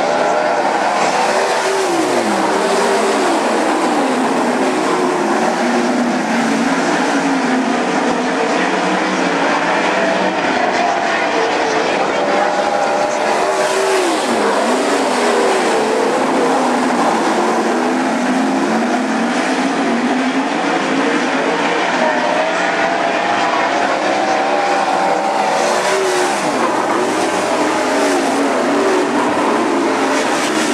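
Several 410 sprint cars' V8 engines racing together on a dirt oval, their pitch rising and falling continuously, with sharp drops a few times.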